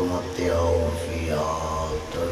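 A man chanting a melodic religious recitation into a microphone, holding long notes with sliding pitch, over a low steady hum.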